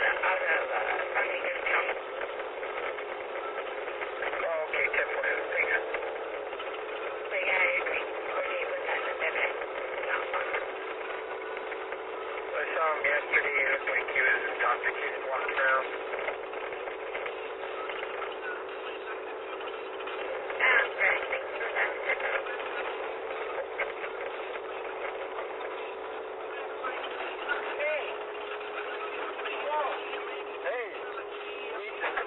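Muffled, unintelligible voices, police radio chatter, inside a moving patrol car, over a steady hum, all heard thin and narrow through the in-car camera's audio.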